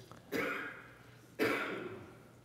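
Two short coughs about a second apart, each starting sharply and trailing off, with a faint click just before the first.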